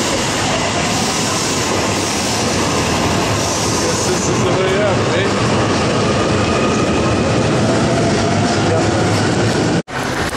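A train running at a station platform: a loud, steady rush of rail noise, with crowd voices underneath. It cuts off suddenly just before the end.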